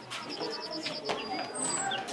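Birds calling: a quick trill of about eight high chirps near the start, then a few single high notes and a short chirp near the end.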